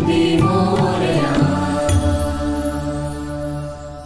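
Ganesh devotional song with chanted voices over instruments, ending about two seconds in on a held chord that then fades out.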